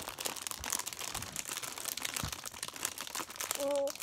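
Clear plastic candy packet crinkling and crackling as it is handled and pulled at. A short hummed vocal sound comes near the end.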